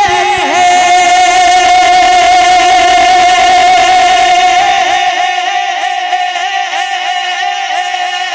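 A man singing a naat into a microphone, holding one long high note. The note is steady at first, then wavers in an even vibrato from about five seconds in.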